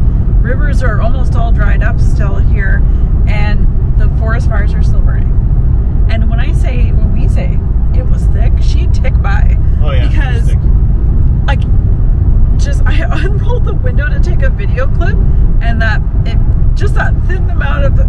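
Steady low rumble of road and engine noise inside a moving car's cabin, under conversation.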